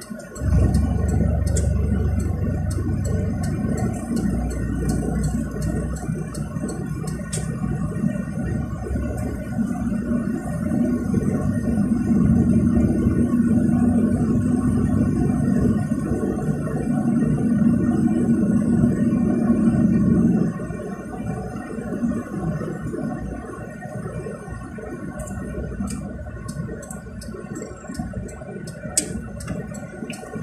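Cabin noise of a car on the move: a steady engine and road drone with a sustained low note that grows through the middle and drops off about two-thirds of the way through, with small rattling clicks now and then.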